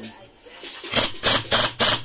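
Cornwell pneumatic impact wrench run on air in short, loud trigger bursts, about three a second, starting about a second in.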